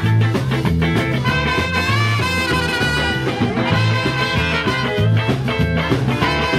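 Live band playing an instrumental passage: a horn section of two trumpets and a saxophone over electric bass and drums, in a steady, upbeat groove.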